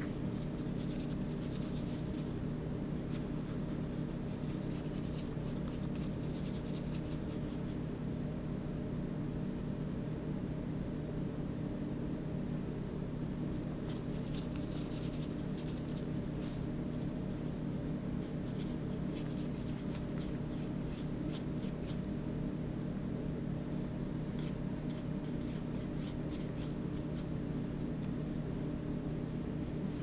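A steady hum runs throughout. Over it come three runs of faint, quick scratching strokes, like a colouring marker or crayon drawn across paper: in the first several seconds, again about halfway through, and briefly later on.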